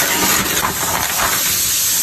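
Sheet of paper rustling and crinkling as it is flipped over and pushed aside by hand, giving a continuous dry hiss.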